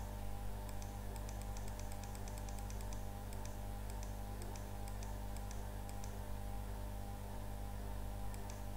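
Light, irregular clicking at a computer, the keys or controls tapped repeatedly while the on-screen slides are being changed, over a steady low hum.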